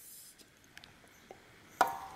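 A few faint handling ticks, then a sharp click near the end as a steel ruler is set against a guitar's tremolo bridge, followed by a faint ringing.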